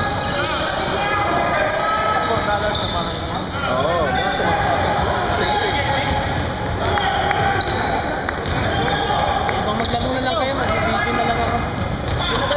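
Basketball bouncing on a hardwood gym floor amid players' voices and calls, with the echo of a large hall.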